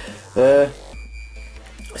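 A man's short voiced utterance about half a second in, then quiet electronic background music with steady high tones.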